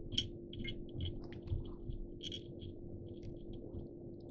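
Faint scattered ticks and rustles of fingers handling pheasant-tail fibres and thread on a hook held in a fly-tying vise, over a steady hum.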